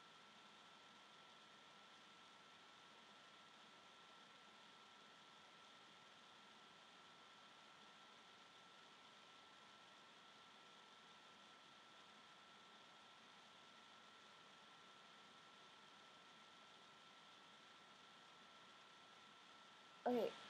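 Near silence: a faint steady hiss with a thin, steady high whine, the self-noise of a webcam microphone.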